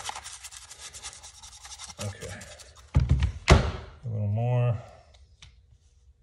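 A cheap chip brush loaded with rubbing buff being scrubbed and dabbed quickly against the painted surface of a prop box, its bristles scratching in fast strokes. About three seconds in come two heavy thunks as the box is set down on the workbench, followed by a short vocal sound.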